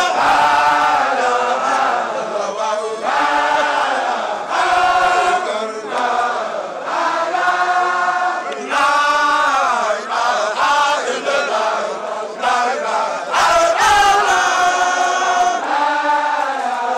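A group of Baye Fall men chanting a devotional zikr together in unison, long sung phrases that rise and fall in pitch, with brief pauses between phrases.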